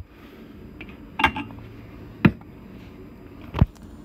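Three sharp knocks about a second apart as the round air filter element is handled and lifted off its stud in its sheet-metal housing.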